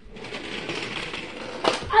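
Toy monster truck running along a plastic track with a rattling whir, ending in a sharp click about a second and a half in.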